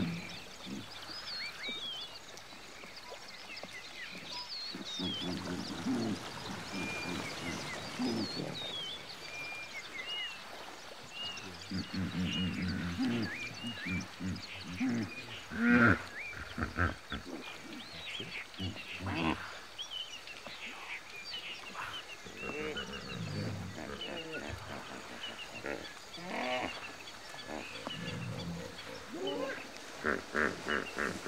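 Hippopotamus bulls grunting in repeated deep, pulsing calls during a territorial standoff, the loudest call about halfway through. Birds chirp throughout.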